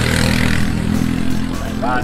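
A steady low engine-like hum runs throughout, with a brief hiss in the first half-second.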